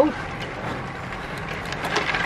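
Wind on the microphone and road-bike tyres rolling on tarmac, a steady rushing noise.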